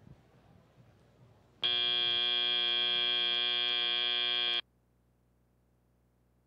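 FRC field end-of-match buzzer: one loud, steady, buzzing blast of about three seconds that cuts off suddenly, signalling that the match time has run out.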